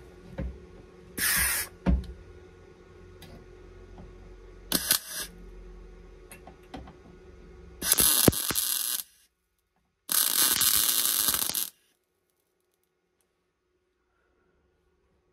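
MIG welder tack-welding a steel seatbelt-bracket plate onto a car's inner sill: four short bursts of welding noise, the last two each over a second long. The sound cuts off abruptly near the end.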